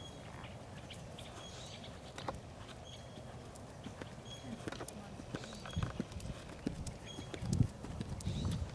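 A ridden horse's hoofbeats on a sand arena, soft thuds and clicks that grow louder and more frequent over the last couple of seconds. A faint short high chirp repeats about every second and a half.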